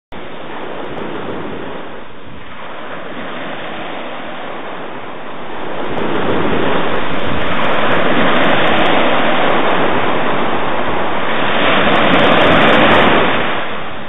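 Ocean surf: waves breaking in a continuous wash of rushing water that grows louder about five seconds in and starts to fade near the end.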